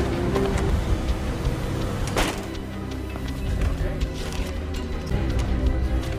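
Tense film-score music with sustained low notes, over a background of street traffic noise; a short, sharp swish cuts through about two seconds in.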